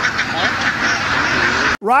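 A large flock of domestic ducks quacking all at once, a dense continuous chorus of overlapping calls. It cuts off abruptly near the end as a man's voice starts.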